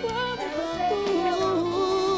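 Live forró band music with a male singer, amplified through the PA; about a second in he holds one long, wavering note over the band.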